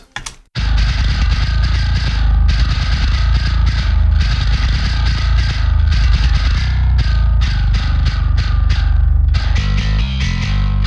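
Heavily distorted metal bass guitar stem playing back, a chugging riff with short stops in it, starting about half a second in. Near the end the sound changes to a lower, more separated pattern.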